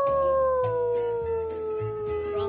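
A toddler's long, drawn-out sung "you": one held note that slides slowly down in pitch.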